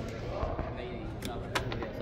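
Faint background voices, with a few sharp clicks about a second and a half in.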